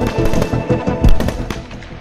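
A rapid string of rifle shots on a firing range, the loudest about a second in, over background music.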